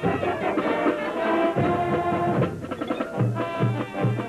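High school marching band playing: brass and woodwinds sounding full chords over drums. From a little past three seconds in, low bass notes pulse about three times a second.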